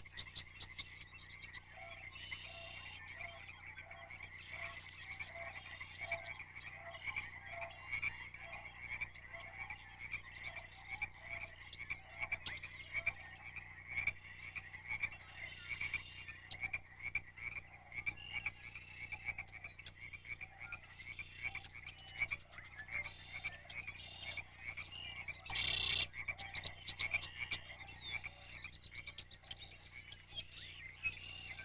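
A dense chorus of calling animals: rapid, repeated chirps and trills overlapping throughout, with a brief louder burst of calls near the end.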